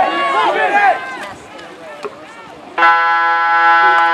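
A pool scoreboard horn sounds a loud, steady buzz about three seconds in, marking the end of the quarter. Before it come spectators' voices.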